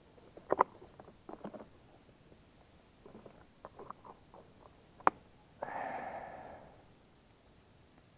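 Sharp plastic clicks and small rattles of a bait box being opened and picked through for a fresh maggot, with a loud snap about five seconds in. A short breathy noise lasting about a second follows it.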